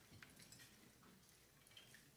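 Near silence in a room, with a few faint scattered clicks: small handheld light switches being flipped on by the audience.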